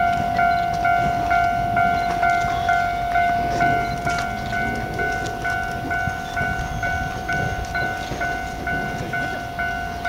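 Japanese level-crossing alarm ringing in an even repeating pattern, about two and a half rings a second over a continuous ringing tone, with the low rumble of a slow-moving E657 series train crossing.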